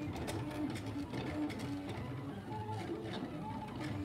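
Silhouette Cameo 3 vinyl cutter running a cut: its motors whine in short runs at a steady pitch as the blade carriage and rollers move, with faint clicks between runs.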